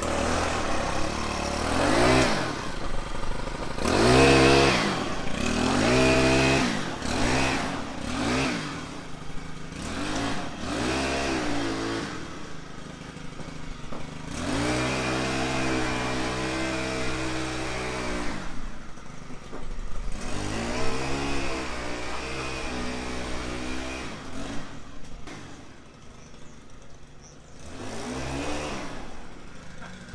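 Small gas engine of a power broom revving up and down over and over as its rubber paddle drum sweeps feed along a concrete barn floor. It drops back briefly near the end before revving up again.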